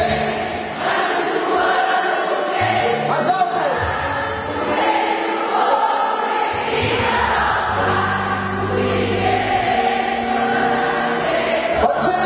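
Church song sung by many voices together over instrumental backing, with held bass notes that change every second or so.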